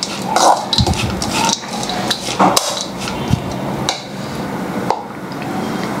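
A small metal spoon stirring a bowl of grated coconut mixture, scraping and clinking against the bowl at an uneven pace.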